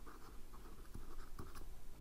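Faint scratching of a stylus on a pen tablet as two words are handwritten, in short strokes.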